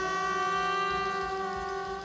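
Live band music: a long sustained note that bends slowly in pitch rings over the band.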